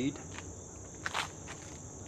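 Steady high-pitched chorus of insects, cricket-like, with a short soft noise about a second in.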